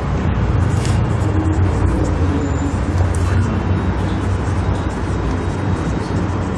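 Steady low background rumble, with a few faint scratches from a marker writing on a whiteboard.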